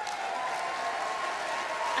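Large audience applauding steadily in a conference hall.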